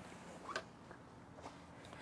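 Faint handling sounds of a hinged plywood storage lid under a bunk: one brief light tap about half a second in and a couple of fainter ticks later, over quiet room tone.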